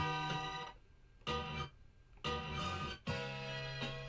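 Music sample played back in short chopped pieces on a sampler, with keys and guitar tones, stopping and restarting several times with brief silences between.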